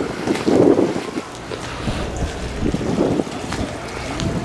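Wind buffeting the microphone in gusts, the strongest about half a second in, over a steady wash of water pouring from a pipe into shallow tanks and spilling over.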